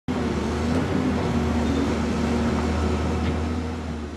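Caterpillar tracked excavator's diesel engine running steadily, a low even drone with no breaks.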